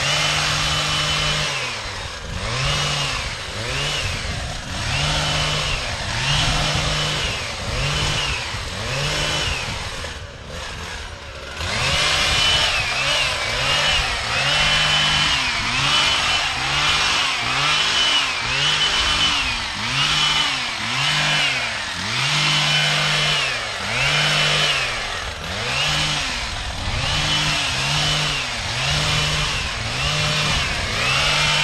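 Gas-powered hedge trimmer's small engine revved up and down over and over, about once a second, as it cuts the hedge. Near the middle it drops back for a moment to a softer, lower run before revving again.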